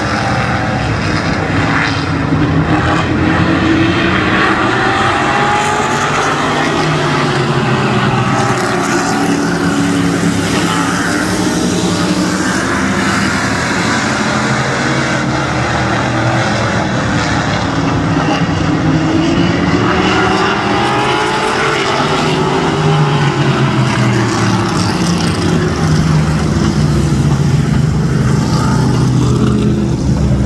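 A pack of modified race cars running laps on an asphalt short track, several engines blending together, their pitch swelling up and falling away over and over as the cars come through the turns and down the straights.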